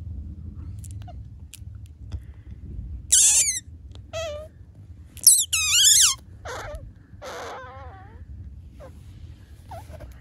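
Newborn Asian small-clawed otter pup squeaking: a run of about five high squeaks that slide down in pitch, starting about three seconds in, the loudest just past halfway.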